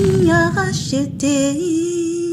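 A woman's singing voice in a short channel ident jingle: a few sung notes that settle into one long held note near the end.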